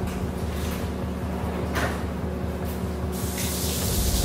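A kitchen faucet is turned on about three seconds in, and its water hisses steadily into a stainless steel sink. A short knock comes about two seconds in, and steady background music runs underneath.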